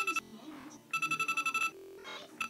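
Electronic Deal or No Deal tabletop game ringing through its small speaker with a rapid electronic trill, like a phone ringing: the banker's call announcing a bank offer. Two bursts are heard, one ending just after the start and one of under a second in the middle.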